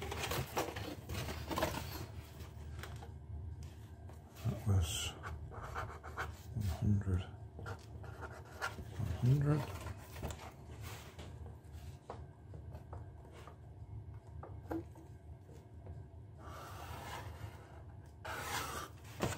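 A pen scratching on corrugated cardboard in short strokes as lines are drawn along a steel ruler, with a clear stroke near the end. Low muttering and breaths from the man drawing come a few times in between.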